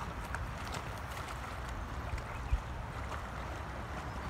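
Steady rush of a flowing, rippling river, with low wind rumble on the microphone and one brief low bump about two and a half seconds in.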